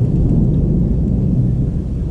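Thunder rolling on as a deep, continuous rumble in a rainstorm.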